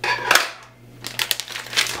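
Clear plastic packaging bag crinkling as a hard phone case is slid out of it: a rustling burst near the start, then a few quick crackles near the end.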